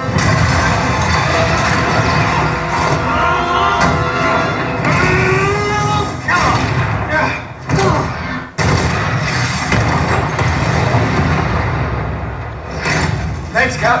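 Action film soundtrack played through a Sonicgear Studiobar 500HD Maverick soundbar in movie mode: a dense score with strong bass, a few hits and snatches of dialogue near the end.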